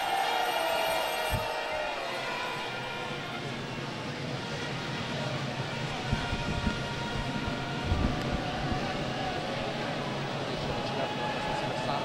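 Trumpets holding long notes over a steady crowd murmur, the pitch sliding down once in the first two seconds, with a couple of low thuds, about a second in and near eight seconds.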